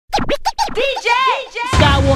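DJ scratching a record on a turntable: quick back-and-forth strokes with the pitch sweeping up and down. A hip hop beat with heavy bass drops in near the end.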